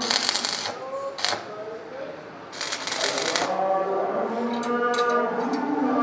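Stick (arc) welding crackle as iron scrollwork is tack-welded: three short bursts, the first at the start, a very brief one about a second in, and a longer one around the middle. Sustained layered tones run underneath.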